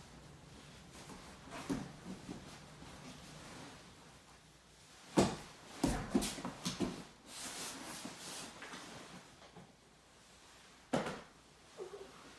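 Two grapplers in gis moving on a foam mat: gi fabric rustling and bodies scuffing, with a sharp thump about five seconds in, a run of scuffs and knocks just after, and another thump near the end.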